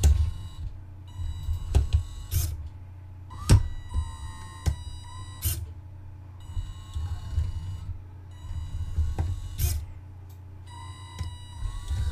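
Small electric motors of a LEGO-and-Makeblock brick-testing rig running its remove-and-reassemble loop: a low motor hum with a faint wavering whine, broken by sharp clicks and knocks at irregular intervals as the arms move and push the brick.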